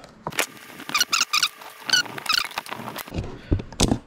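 Copper wire being twisted tight with vise grips around a plastic hood tab: short high squeaks in two clusters, about a second in and again past two seconds, with a few sharp clicks.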